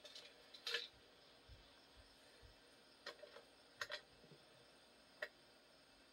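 Near silence with a few faint, short clicks and taps scattered through it, about four in all.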